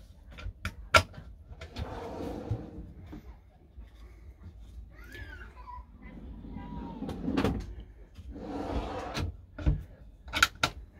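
Kitchen drawers in a motorhome being pulled open and pushed shut by hand, with several sharp clicks and knocks in the first second and a knock near the end.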